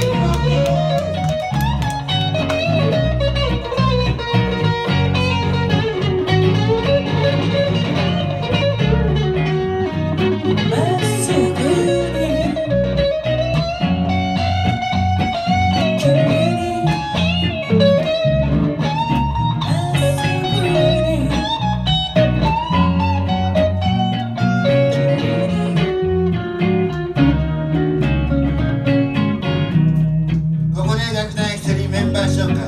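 A live band playing with electric guitars to the fore, a melodic line bending up and down over a steady beat.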